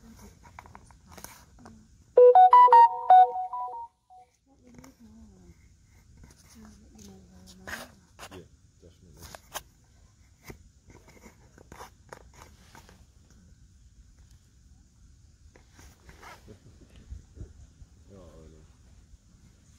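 Electronic device beeping: a quick run of five or six short, pitched electronic notes over about a second and a half, a couple of seconds in. Faint crackles and snaps follow.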